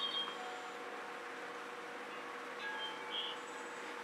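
Quiet room tone with a faint steady hum. A few brief, faint high chirps come just after the start and again about three seconds in.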